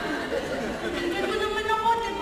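Speech only: actors' voices delivering stage dialogue, with voices overlapping.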